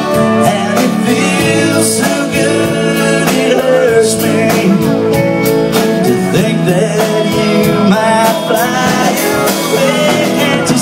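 A live band playing a country song: strummed acoustic guitar, keyboard and drums, with a melody line over them.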